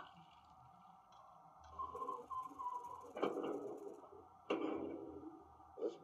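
HO-scale Broadway Limited operating water tower's sound effects and spout mechanism, heard through its small built-in speaker. Three short beeping tones come about two seconds in, followed by two louder sounds about three and four and a half seconds in, each fading over about a second.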